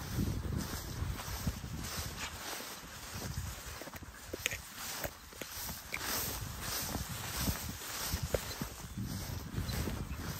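Footsteps through tall, dense grass, the stalks brushing past, over a low, uneven wind rumble on the microphone, with a few light clicks.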